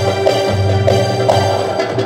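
Live Egyptian band playing the instrumental introduction of an Arabic song, a sustained electronic keyboard melody over a steady bass line, amplified through the stage speakers.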